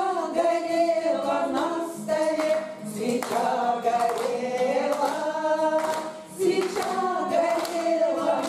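Four women singing a bard song together in chorus to a strummed acoustic guitar, with sustained, sliding sung notes.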